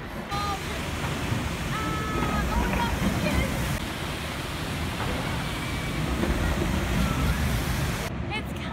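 Steady rush of water along a water-ride flume channel, mixed with wind buffeting the phone's microphone as the boat moves. It starts and stops abruptly.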